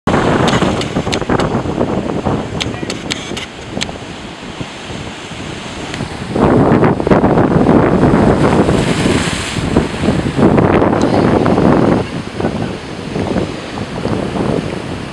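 Ocean waves crashing against a volcanic rock shelf, with wind buffeting the microphone. One surge comes right away, then a bigger wave breaks about six seconds in and its white water washes across the rocks for several seconds before easing off near the end.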